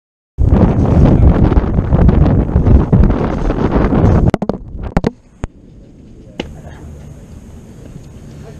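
Loud wind buffeting the camera's microphone for about four seconds. It cuts off into several sharp clicks and knocks from the camera being handled, then a quieter steady outdoor background with one more click.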